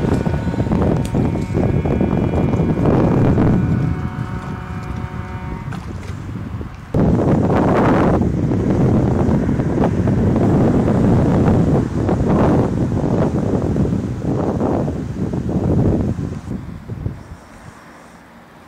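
Wind buffeting the microphone in gusts, a loud low rumble over a wide river. In the first few seconds a faint steady drone from a motor cargo barge's engine runs under it. The rumble jumps louder about seven seconds in and fades near the end.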